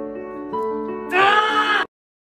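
Background music of held notes, then about a second in a loud, wavering, bleat-like cry that cuts off abruptly just before the end.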